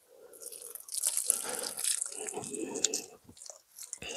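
Water pouring and splashing from a watering can onto garden soil, irregular and spattering, starting just after the beginning and tailing off near the end.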